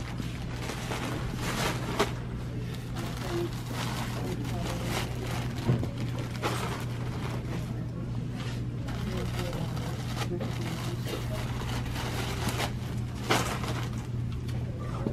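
Plastic bags of potting soil being handled and set into a wire shopping cart: plastic rustling with a few thumps, over a steady low store hum.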